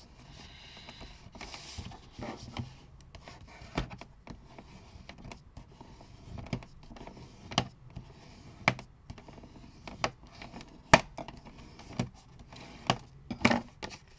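Thin patterned card being folded and pressed flat by hand on a plastic paper-trimmer board: faint paper rustling with scattered sharp taps and clicks, the loudest about eleven seconds in.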